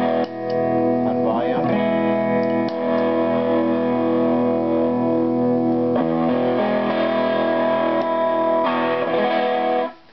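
Electric guitar played through a PNP germanium fuzz pedal with its drive engaged: held, distorted chords that change every two to three seconds and are cut off right at the end.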